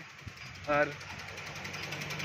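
A man says one short word, and a steady low hum comes up about a second in and keeps going.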